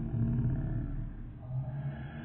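A man's voice making a low, drawn-out, roar-like sound held on one low pitch, with a short break about a second and a half in.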